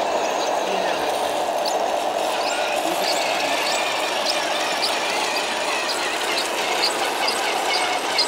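Radio-controlled scale MAN 6x6 tipper truck driving slowly under load, with a light, regular ticking about twice a second from about three seconds in, over a steady background of voices in a large hall.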